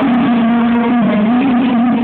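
Live concert music: a male singer holding long, slightly wavering sung notes over the band.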